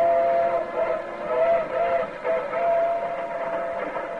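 Steam locomotive whistle sound effect in a radio drama: a long two-toned chord that wavers and breaks up in the middle, then holds steady again.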